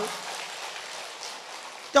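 Audience applause: many hands clapping in an even, steady patter.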